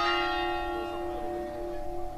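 A church bell's toll ringing on and slowly dying away.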